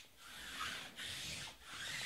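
Sticky lint roller rolled back and forth across a black cloth table cover, in repeated strokes a little over half a second each with brief pauses between them.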